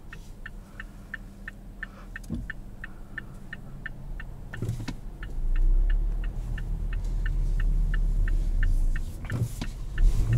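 Turn-signal indicator clicking steadily, about three clicks a second, inside the cabin of a 2021 Mazda CX-5 with the 2.5-litre turbo four-cylinder. About five seconds in, the engine's low rumble grows louder as the car pulls away from the stop.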